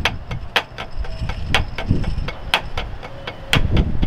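Two drummers playing a rudiment exercise in unison on a rubber practice pad with wooden drumsticks: crisp stick strikes with a loud accent about once a second and softer taps between. The exercise puts a short, dry (secco) buzz stroke on the first tap after each accent.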